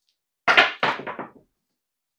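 A pair of dice thrown down a craps table: a quick run of knocks starting about half a second in as they land, strike the back wall and tumble to a stop, all over in about a second.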